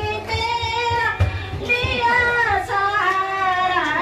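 A woman singing a Hindi devotional song (bhajan) into a microphone, with long held, wavering notes.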